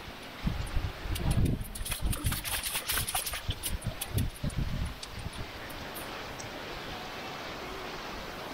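Footsteps splashing and squelching through shallow water over gravel and mud, irregular splashes with low thuds for about the first five seconds, then a steady rush of flowing river water.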